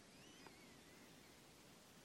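Near silence: faint room hiss, with a very faint high wavering chirp in the first second and a soft tick about half a second in.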